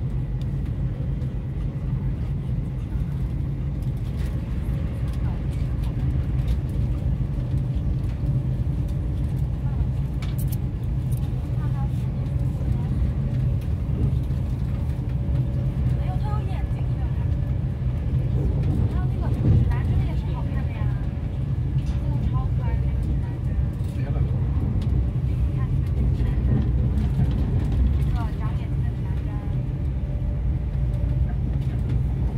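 Steady low rumble of a moving vehicle heard from inside it, with a faint steady hum and indistinct voices in the background.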